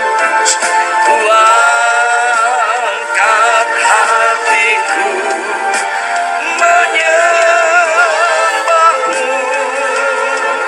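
A worship team singing a Christian worship song into microphones, holding long notes with heavy vibrato.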